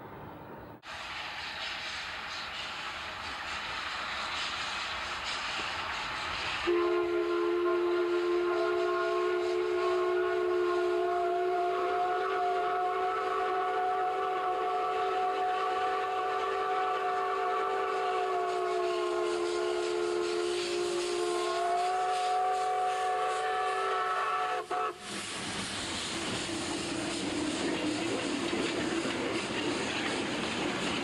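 Mikado steam locomotive's whistle blown in one long blast of about eighteen seconds, several tones sounding together, dipping slightly in pitch a few seconds before it stops. Before it the noise of the approaching train grows louder, and after a sudden cut comes the noise of the train passing.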